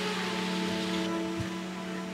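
Soft background music of slow, sustained held notes.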